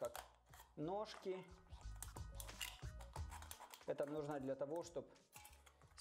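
Quiet, scattered snips and clicks of small scissors cutting into a thin aluminium drink can.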